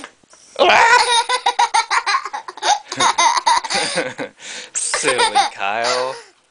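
A young boy laughing hard: a long run of quick laughs starting about half a second in, then a second burst of laughter near the end.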